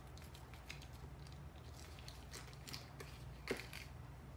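Faint crinkling and light clicks from hands handling a foil-wrapped block of cream cheese, with one louder click about three and a half seconds in, over a low steady hum.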